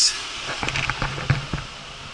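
A quick run of clicks and knocks, with a few dull thuds, from about half a second in to about a second and a half: handling noise as the camera is moved in against a wooden cabinet shelf.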